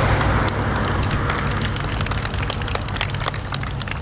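Road traffic on the highway behind: a passing car's tyre and engine noise, loudest at the start and fading away over the first couple of seconds, over a steady low traffic rumble with scattered light clicks.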